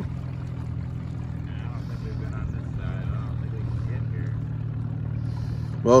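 Boat's outboard motor running steadily with a low, even hum.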